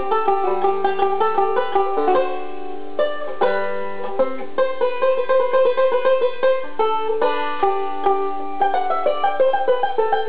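Ome Monarch five-string resonator banjo picked in quick, bright runs of notes, with a few longer ringing notes about two to four seconds in before the fast picking resumes. It is loose improvised noodling rather than a set tune.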